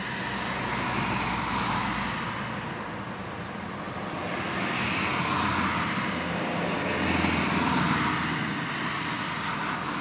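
Road traffic: cars passing by, the noise swelling and fading in waves, about a second in, around five seconds in and again around seven to eight seconds in.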